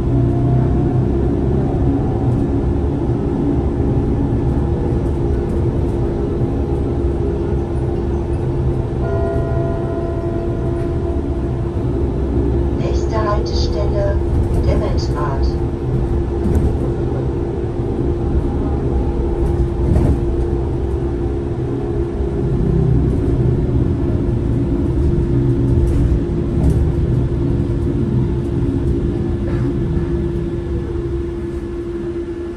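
Interior of a Solaris Trollino 18 articulated trolleybus on the move: a steady electric drive hum with one constant tone over low road rumble.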